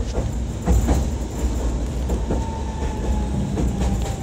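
A tram running along street track: a steady low rumble with several wheel clacks over the rails, and a faint thin whine in the second half.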